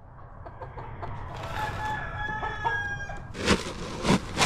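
A rooster crowing once in one long call, starting about a second in, with hens clucking around it. Near the end, a loud gritty crunch as a plastic scoop digs into a bin of grain feed.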